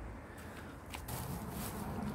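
Hands scooping and rustling loose wood chip mulch, faint, with a couple of small ticks before a soft, steady rustle from about a second in.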